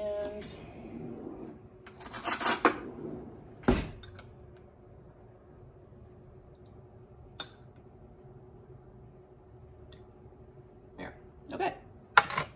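Metal spoon clinking and tapping against glass canning jars filled with pineapple and water: a quick cluster of clinks about two seconds in, a louder knock just before four seconds, then a few single light ticks and more clinks near the end.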